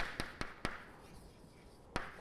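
Chalk tapping against a blackboard while letters are written. Four sharp taps come quickly in the first second, then a pause, then another tap near the end.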